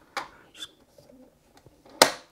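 Plastic clicks from a Tassimo Style coffee pod machine being closed: a light click a fraction of a second in, then a loud sharp snap near the end as the lid is pressed shut over the pod holder.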